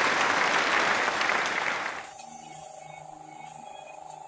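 Applause: dense clapping that cuts off suddenly about halfway through, leaving a faint steady hum.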